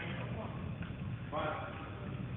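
Faint, indistinct voice over a steady low rumble, heard as two short snatches: one at the start and one about one and a half seconds in.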